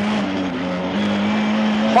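Lada 21074 rally car's four-cylinder engine running hard on a loose stage, heard from inside the cabin. Its note dips in pitch about half a second in and climbs back about a second in.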